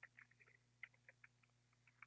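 Faint computer keyboard keys being typed: an irregular run of light clicks, one keystroke after another.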